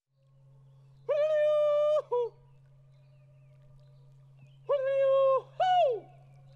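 A voice gives two wordless alpine calls. Each is a steady held note of about a second followed by a short note that falls away, the second call a little lower than the first. A faint steady low hum runs underneath.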